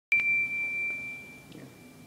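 A single high-pitched ding, struck with a click just after the start, then ringing as one clean tone that fades away over about two seconds.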